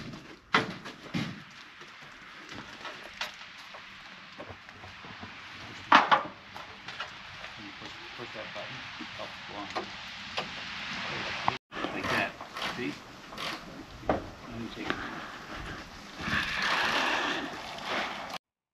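Scattered clicks and knocks of hand tools and bolts as a solar panel mounting frame is bolted to a barn wall, with one sharper knock about six seconds in.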